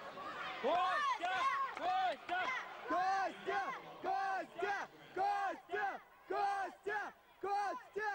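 Spectators shouting a rhythmic two-syllable cheer for a sanda fighter, a long rising-and-falling shout then a short one, about once a second, some seven times over.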